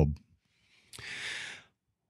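A person's single breathy exhale, like a sigh, about a second in and lasting under a second.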